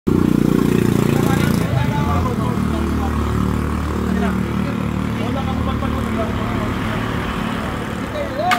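A motor vehicle engine running, loudest in the first second and a half and then a steady low hum, under voices talking.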